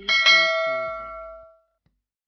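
Notification bell chime sound effect: a single struck ding with several ringing tones that fade out over about a second and a half, the lowest tone lasting longest.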